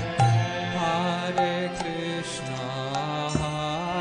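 Devotional chanting sung as a melody over sustained instrumental tones, with sharp percussion strikes dotted through it.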